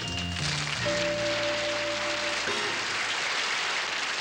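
A stage band holds the closing chord of a song while an audience applauds; the music stops about two and a half seconds in and the applause carries on.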